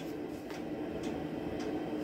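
Low steady room hum with no distinct event.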